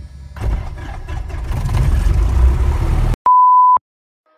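Light aircraft engine and propeller noise heard inside the cockpit, growing louder, then cut off abruptly. It is followed by a steady high beep lasting about half a second.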